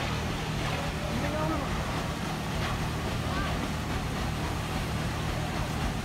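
A boat engine running with a steady low hum, under water wash and wind on the microphone, with faint voices in the background.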